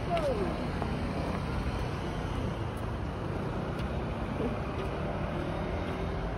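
Steady city road traffic noise from passing cars, with a short voice-like sound about the start.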